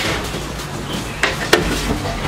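Metal baking trays and a long oven tool clanking against the steel racks of a deck oven: a knock at the start and two sharp clacks close together past the middle, over a steady low hum.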